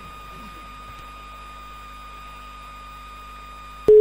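Open telephone line while an outgoing call is placed, with a quiet steady hiss and hum and a thin steady high tone. Just before the end a sharp click sounds as the network's busy-number recording comes on.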